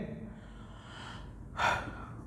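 A man's quick, audible intake of breath about one and a half seconds in, over faint room noise.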